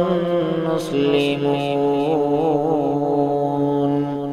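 A man's voice chanting a Qur'anic verse in melodic recitation (tilawah), holding long drawn-out notes with an ornamented, wavering pitch that steps down to a lower note about a second in.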